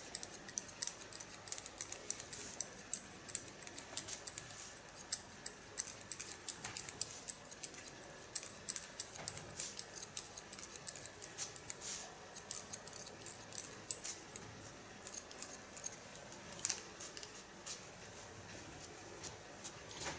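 Hairdressing scissors snipping wet hair in quick, irregular cuts, with light comb strokes between them. The snips thin out near the end.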